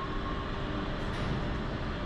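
Steady, even rumble of running machinery at a waste incinerator's enclosed ash conveyor.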